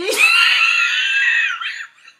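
A woman laughing in one long, very high-pitched squeal that breaks off near the end.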